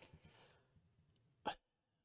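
Near silence, broken once about one and a half seconds in by a single short sound.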